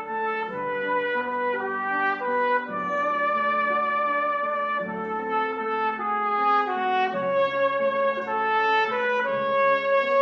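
A cornet playing a slow solo melody of held notes, accompanied by piano chords.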